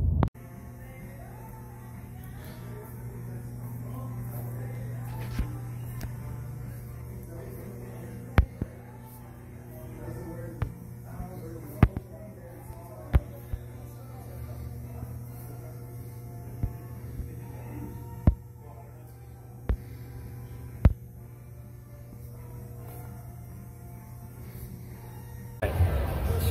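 Steady low hum of a large indoor room, with faint background music and a scatter of sharp, separate clicks about a second or two apart in the middle stretch.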